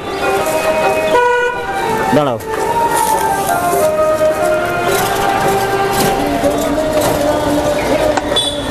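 A vehicle horn toots briefly about a second in, amid street traffic. Held tones stepping between pitches follow through the rest, like a melodic horn or music.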